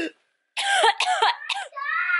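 A woman's voice making a run of short non-word vocal sounds, like coughing or throat clearing, after about half a second of dead silence at the start.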